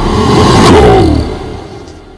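Sound effects of an animated countdown intro: a sharp hit a little under a second in, then a falling, whining tone that fades away.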